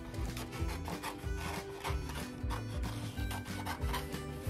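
Scissors cutting through construction paper in a series of short snips, over background music.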